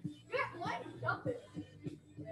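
Three or four short, high yelping calls within about a second, over background music with a regular beat.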